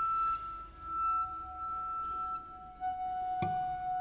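Contemporary chamber music: a long held high flute note, joined about a second in by a lower held tone, with one sharp attack about three and a half seconds in.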